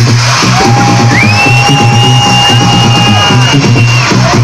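Loud electronic dance music from a live DJ set played over a club sound system, with a steady low bass rhythm. Long held high tones run over it from about half a second in, one sliding upward about a second in and holding until near the end.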